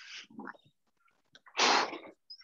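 A man breathing hard while jogging on the spot doing butt kicks: a short breath at the start, then a loud, sharp exhale about one and a half seconds in.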